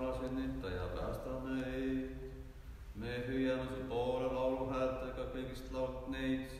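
Unaccompanied voices chanting an Orthodox akathist hymn in Estonian on sustained, stepwise-shifting notes, with a short break about two and a half seconds in.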